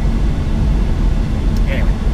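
Steady low drone of a Western Star 5700 semi-truck cruising at highway speed, heard inside the cab: engine and road rumble.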